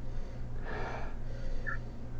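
A short sniff through the nose, about half a second in, from a person nosing red wine in a glass. A steady low hum runs underneath.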